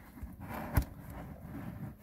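Handling noise from an iron meteorite being turned over in the hands: two light knocks, the second sharper, a little under a second in.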